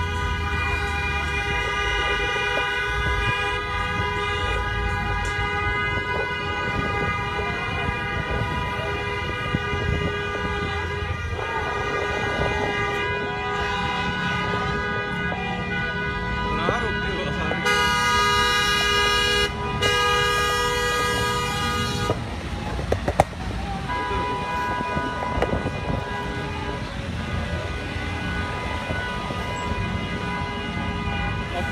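Many car horns honking steadily together from a slow procession of cars and trucks, over engine and traffic rumble. About eighteen seconds in, one louder horn is held for roughly four seconds with a brief break.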